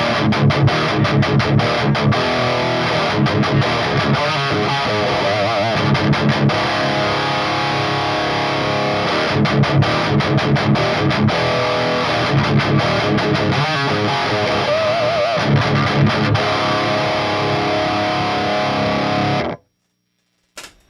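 Electric guitar playing a distorted riff through a Finch Electronics Scream! tube-screamer-style overdrive pedal, set in its TS9 and 808 modes. Low notes are struck in a steady rhythm, and the playing stops abruptly near the end.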